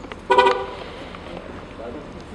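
A single short car-horn toot, about a quarter of a second long.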